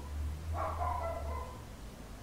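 A short, high whining animal call about half a second in, over a low steady hum.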